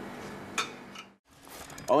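Quiet room tone with a faint steady hum and one short click, broken by a brief dropout to silence; a man starts speaking near the end.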